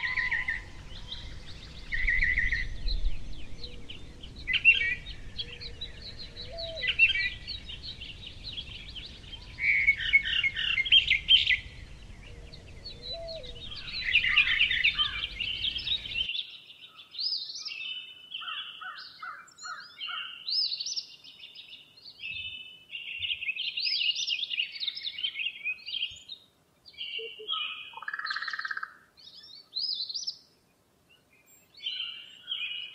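Songbirds chirping and trilling in many short, overlapping calls. A low background noise runs underneath for the first half and cuts off suddenly about halfway through, leaving the birdsong on its own.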